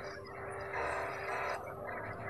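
Faint background instrumental music with steady held notes.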